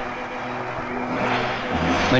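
A police jeep's engine running steadily as it rolls slowly up to a gate, with a deeper, louder engine note coming in near the end.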